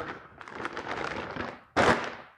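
Clear plastic bag crinkling and crackling as a welding helmet is pulled out of it, with one louder, sharp crackle near the end.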